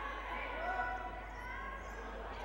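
Faint sound of a basketball game in play in a large sports hall: a ball bouncing on the court, with faint distant voices.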